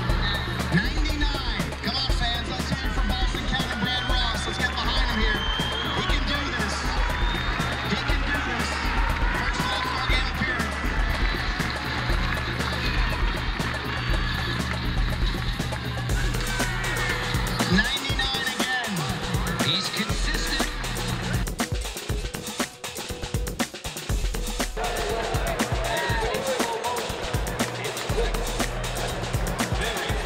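Background music with a steady beat. The mix changes about halfway through.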